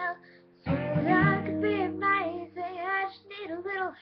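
A young woman singing to her own strummed acoustic guitar. After a short pause about half a second in, a strum and the sung line come back in together.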